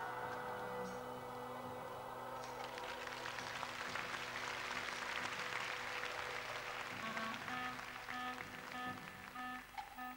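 Audience applause that starts about two and a half seconds in, swells, and dies away near the end, over soft sustained music; a repeating pattern of short musical notes comes in for the next scene.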